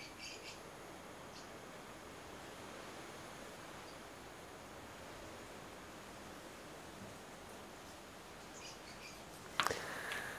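Faint, steady hiss of CO2 gas flowing from a cartridge inflator through the valve into a bicycle tyre as it fills and hardens.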